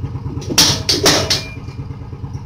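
Impact punch-down tool seating and trimming telephone wires on a 66 punch-down block: three sharp snaps in quick succession around the first second, over a steady low machine hum.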